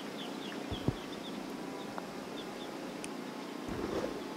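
Small birds chirping repeatedly over a steady background hush. About a second in comes a single soft tap, the putter striking the golf ball on a par putt.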